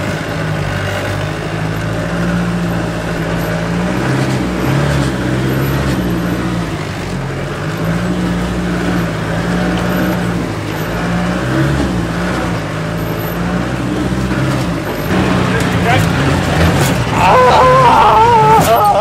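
Land Rover engine heard from inside the cab, driven hard off-road, its pitch rising and falling over and over as the throttle is worked. Near the end a man yells loudly over it.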